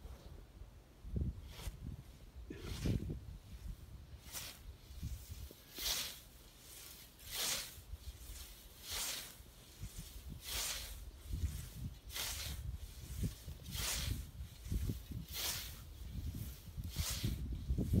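A hand scythe's blade swishing through tall grass as it is swung, cutting it in steady strokes about one every second and a half.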